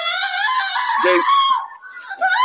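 A woman's long, very high-pitched moaning "ah", an orgasm sound effect played from an anime soundboard. It fades out about a second and a half in.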